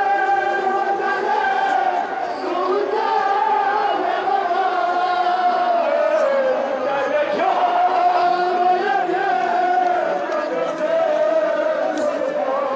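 Men chanting a Balti noha, a Shia mourning lament, in long drawn-out notes that rise and fall slowly, over the sound of a large crowd.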